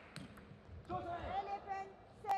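Table tennis ball clicking sharply twice just after the start, then a player's loud celebratory shout, held at a steady pitch for about a second, as the point that wins the game is taken.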